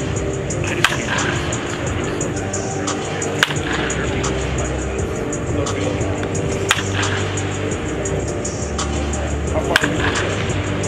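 Baseball bat hitting pitched balls in batting practice: four sharp cracks about three seconds apart, one per swing, the last near the end.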